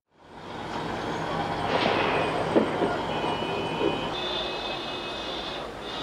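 Steady street-traffic noise with a high squealing tone joining about three seconds in, and a few short sharp knocks, the loudest about two and a half seconds in.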